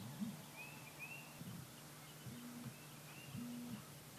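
Faint outdoor ambience over a steady low hum: a few short, high bird chirps, plus three or four brief low tones that rise, hold and drop.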